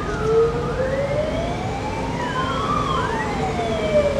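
Fire engine siren wailing in slow rising and falling sweeps, two tones gliding in opposite directions and crossing about three seconds in, over the low rumble of the truck.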